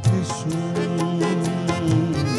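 Live Gujarati folk song: harmonium chords under a man's held sung note, with a quick steady beat of percussion.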